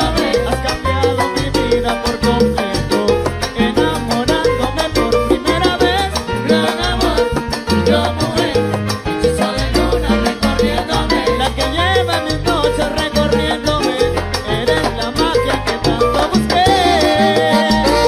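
Salsa music playing, with a repeating bass line under dense percussion; held melody notes come in near the end.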